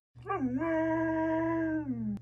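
Siberian husky giving one long, level howl-like 'talking' call of about a second and a half, dipping and rising in pitch at the start and falling off at the end.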